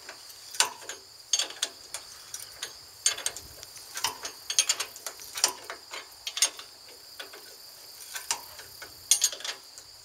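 Socket ratchet wrench clicking in short, irregular runs as the trailer ball coupler's hitch bolts are tightened. A steady high drone of insects runs underneath.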